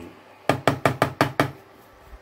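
A wooden spatula knocks against a non-stick frying pan: a quick run of about seven sharp knocks lasting about a second.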